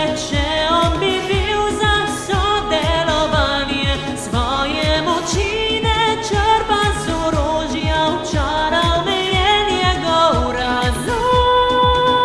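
A woman singing in Slovene over an instrumental backing track with a steady kick-drum beat, holding a long note near the end.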